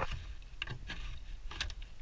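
A few scattered light clicks and taps over a low, steady rumble.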